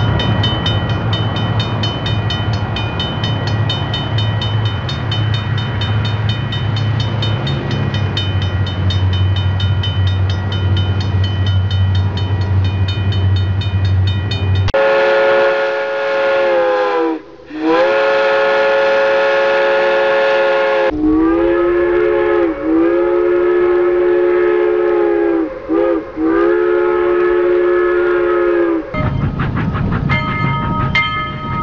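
A train's steady rumbling running noise, then from about halfway a loud locomotive whistle sounding a chord of several tones in long blasts of a few seconds each, separated by brief breaks.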